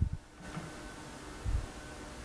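Two soft, low thumps, one at the start and one about a second and a half in, over a faint steady hum: light handling knocks on the mill while a dial indicator is brought against the spindle adaptor.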